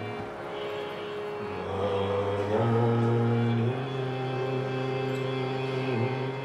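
Harmonium playing sustained chords, the held notes moving to new pitches a few times, with no drumming.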